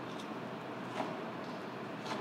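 Filleting knife being pushed along between flesh and skin of a snapper fillet on a plastic cutting board: faint handling and slicing over a steady background noise, with one light tap about a second in.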